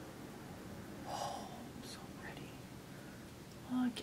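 A quiet room with one soft, breathy, whisper-like breath from a woman about a second in and a faint click, then the first spoken word near the end.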